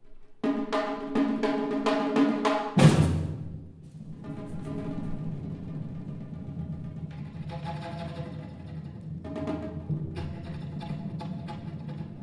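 Live percussion-ensemble music: rapid drum strokes over a pitched melody line, a loud hit about three seconds in, then a sustained low bass tone beneath continuing drumming and melody.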